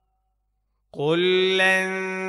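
Slow Quran recitation with tajweed: after about a second of silence, the reciter's voice comes in and holds one long, steady note.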